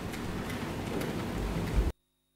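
Steady hiss of an open courtroom microphone with a few faint clicks and a low thump near the end, then the sound cuts off abruptly to dead silence.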